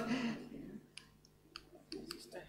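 A few small, sharp clicks, about a second in and then twice close together near the end, from a presentation clicker or mouse advancing the slide's bullet points, over quiet room tone.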